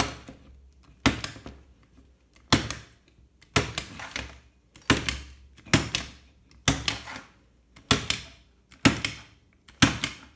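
A household stapler opened flat, driving staples one after another through wet watercolour paper into a Gator Foam board: about ten sharp clacks, roughly one a second.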